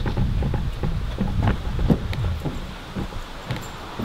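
Irregular knocks and thumps, about a dozen, with wind and handling rumble on the microphone underneath.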